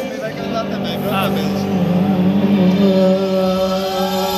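Live rock band heard from the stadium crowd, playing long held, wavering notes, with crowd voices over them.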